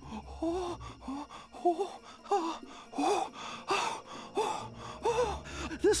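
An animated character's rapid, excited gasping breaths, about ten short voiced gasps in quick succession, each rising and falling in pitch.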